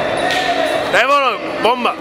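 A Muay Thai fighter drops onto the ring canvas with a dull thud. A person gives two short shouts, each rising then falling in pitch, over the noise of the hall.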